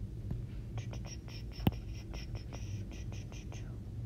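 Stylus rubbing and tapping across a tablet screen in a quick run of short strokes as highlighter marks are erased, with one sharp tap partway through.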